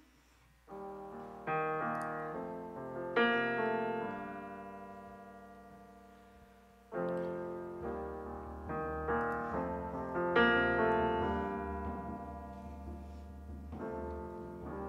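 Yamaha stage keyboard with a piano sound playing slow chords, each struck and left to ring and fade. A deep bass comes in under the chords about eight seconds in.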